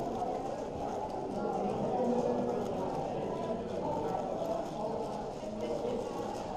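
A 7x7 speed cube being turned quickly by hand, its layers clicking and clacking in a continuous run, over a murmur of voices in the room.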